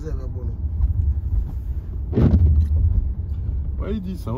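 Steady low rumble of a car driving, heard from inside the cabin, with voices talking over it and a louder burst about two seconds in.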